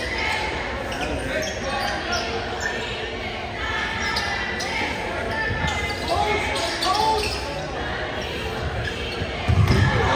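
Basketball being dribbled on a hardwood gym floor, each bounce echoing in the large hall, with players calling out over it. There is a louder thud near the end.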